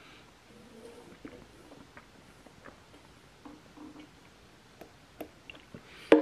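Faint sound of a person blowing by mouth into the tubing of an RC jet's fuel tank to pressurize it for a leak test, with a few light clicks near the end as the tubing is handled.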